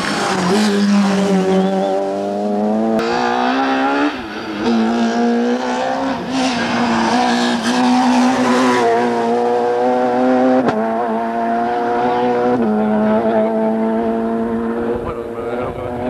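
Rally car engine running at high revs, its pitch held nearly level for long stretches and broken by brief drops at gear changes a few times.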